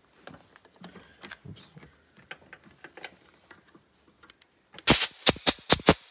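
Compressed-air inflator gun with a pressure gauge, its trigger squeezed in short bursts to push air into the power-steering reservoir and pressurise the hydraulic system so the pump does not draw in air. Light clicks from handling the fitting, then about five sharp air blasts in quick succession near the end.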